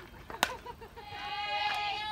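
A single sharp crack as a fastpitch softball is hit, then several voices yelling, one long drawn-out shout held through the last second.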